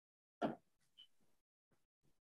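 Quiet room tone, broken by a single short sound about half a second in and a faint brief high tone near one second.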